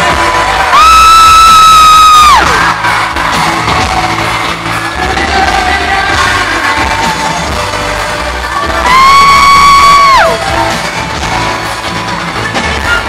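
Live pop-rock band playing loudly through an arena PA, heard from within the crowd. A nearby fan gives two long high-pitched screams, about a second in and again about nine seconds in. Each is held steady and then falls away in pitch, and they are the loudest sounds.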